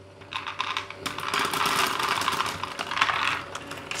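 Small plastic Lego GBC balls poured by hand into the input tray of a Lego Great Ball Contraption module. They clatter and rattle against the plastic and each other for about three seconds, starting a moment in and thinning out near the end.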